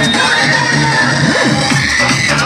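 Loud electronic dance music played through a cart-mounted DJ loudspeaker stack, heavy in the bass, with low notes that slide up and down.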